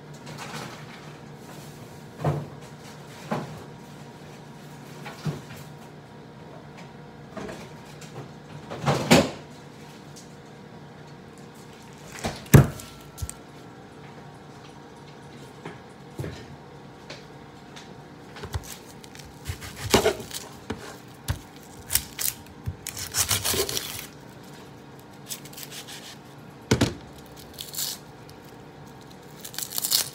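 Kitchen handling sounds: scattered knocks and clunks of things set down on the counter and cupboard doors, with a short rustle about two-thirds of the way through, over a faint steady hum.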